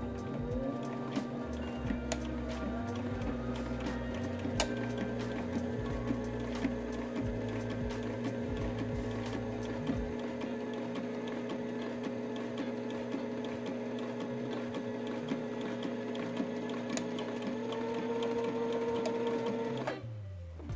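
Sailrite Ultrafeed LSZ-1 sewing machine stitching a straight seam through two basted layers of synthetic canvas. It runs steadily with rapid, even needle strokes.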